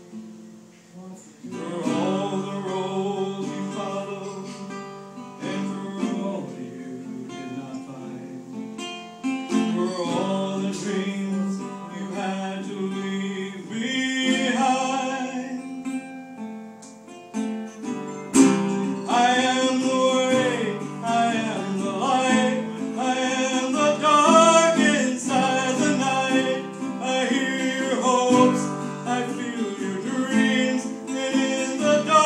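A man singing while accompanying himself on a metal-bodied resonator guitar, playing chords. The music starts softly and grows louder a little over halfway through.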